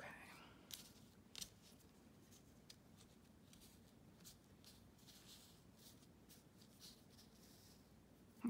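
Near silence, with faint scattered ticks and soft rustles of fingers pressing glued cheesecloth mesh down onto a paper file folder.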